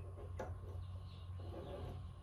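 Quiet handling of a laser engraver's laser module and its small parts during assembly, with one sharp click about half a second in over a steady low hum.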